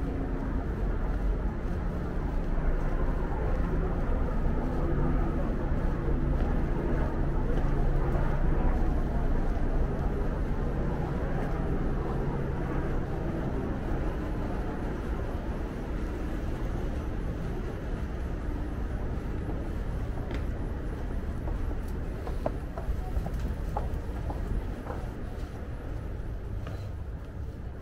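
Urban street ambience in a narrow alley: a steady low hum, strongest in the first half and easing after about 14 seconds, with voices in the background.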